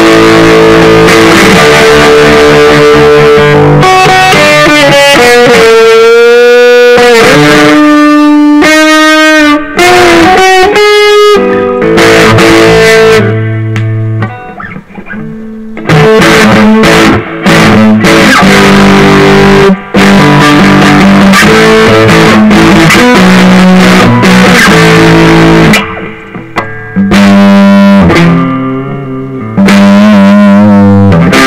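Indie Guitar Company Les Paul-style electric guitar with humbucking pickups played loud through an amplifier: held chords and riffs, with bent, wavering lead notes in the first third and a few short breaks between phrases.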